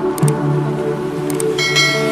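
Background music with steady held tones; near the end a short bright bell-like chime sounds over it, after a couple of faint clicks, typical of a subscribe-button animation sound effect.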